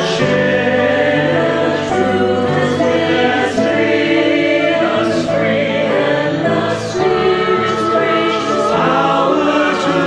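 Mixed choir of men's and women's voices singing together in held, sustained notes, accompanied by piano.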